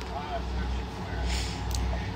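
A low, steady background rumble through a pause in talk, with a faint short vocal sound near the start and a soft breath about halfway through.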